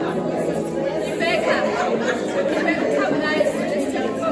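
Many women's voices talking over one another in a large room: general group chatter, with no single voice standing out.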